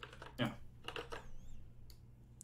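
Computer keyboard keystrokes: a few quiet, scattered key clicks as code is edited.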